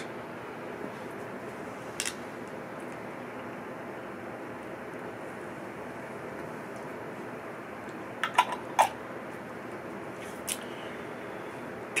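Steady low hiss of small-room background noise, with a few brief clicks: one about two seconds in, a short cluster around eight seconds, and one more near the end.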